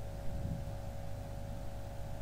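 Steady low hum with a faint even hiss and a few thin, steady higher tones: the recording's background noise, with no distinct event.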